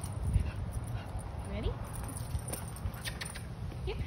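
A puppy whining briefly while waiting for a treat, over a steady low rumble of wind on the microphone, with a few light clicks.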